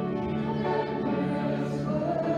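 A group of voices singing sacred music in held notes with piano accompaniment, moving to a new chord about two seconds in.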